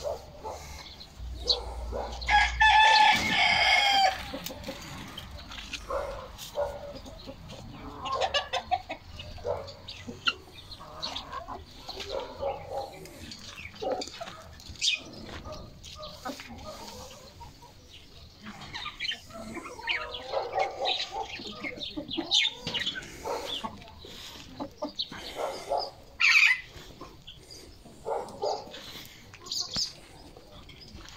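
Domestic chickens: a rooster crows once, long and loud, about two seconds in. Hens cluck and call in short bursts on and off through the rest.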